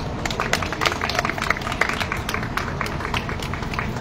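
A small crowd applauding: many hands clapping in a dense, irregular patter.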